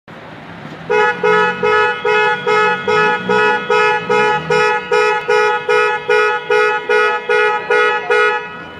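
A car horn sounding in a fast, even series of short blasts, about two and a half a second, starting about a second in.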